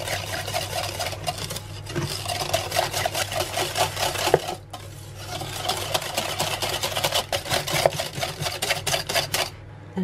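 Stainless wire whisk beating a runny egg-and-butter batter in a glass bowl: fast clinking strokes against the glass, with a brief pause about halfway and stopping shortly before the end.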